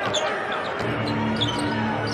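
Basketball being dribbled on a hardwood court over arena background music, with a steady low note held from about a second in.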